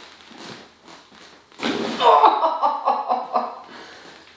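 Chiropractic thrust to the middle thoracic spine on the patient's exhale: a sudden burst of sound about one and a half seconds in, followed at once by the patient's voice crying out for about a second and a half.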